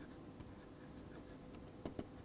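Stylus writing on a tablet PC screen: faint scratching with light taps of the pen tip, the sharpest tap near the end.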